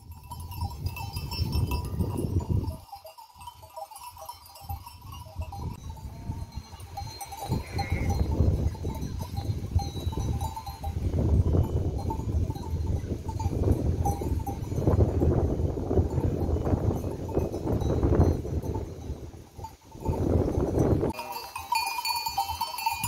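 Bells on a grazing flock of sheep ringing and clinking, over a gusting low rumble of wind on the microphone.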